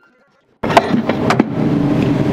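Power sander running on the painted wood of an old upright piano's case, a steady noise that starts suddenly about half a second in, with a couple of sharp knocks against the wood. The sanding only roughs up the old paint before a new coat.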